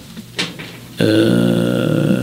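A man's voice: a short breath, then about a second in a long, steady drawn-out vowel, a hesitation sound like "uhhh", held without a break.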